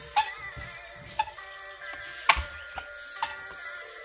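Background music, over which a trials bicycle hops and lands on wooden pallets and ground with five sharp, irregular knocks, the loudest about two seconds in.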